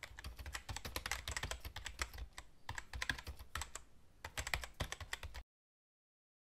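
Computer keyboard typing sound effect: a quick run of key clicks with two short lulls, cutting off suddenly about half a second before the end.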